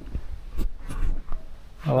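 Soft handling and movement noise from a handheld camera being panned: a low rumble with a few faint ticks. A man's voice starts at the end.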